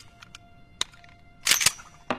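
Sharp metallic clicks of a semi-automatic pistol being worked in the hand: a single click a little under a second in, then a quick cluster of louder clicks about a second and a half in.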